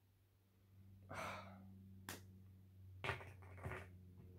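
Faint breathing of a person smelling a sample: a drawn-out sniff through the nose about a second in, a light click at about two seconds, then a few short breath noises near the end.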